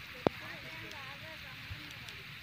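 Faint, distant people's voices over a low rumble, with a single sharp knock about a quarter second in.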